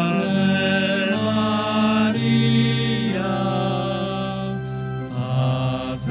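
Voices singing a slow hymn in long held notes, the pitch stepping every second or so, with a short break between phrases near the end.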